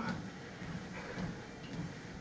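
Treadmill running under a runner: a steady, low mechanical rumble from the belt and motor.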